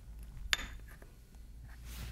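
A single sharp clink of a small stainless-steel ramekin knocked against another or set down on the counter about half a second in, followed by a few faint taps, over a low steady room hum.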